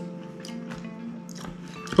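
Background music with steady held notes, under close chewing of a mouthful of food with faint small clicks.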